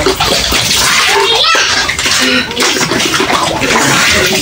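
Water pouring from plastic bottles and splashing into a plastic basin as the bottles are rinsed.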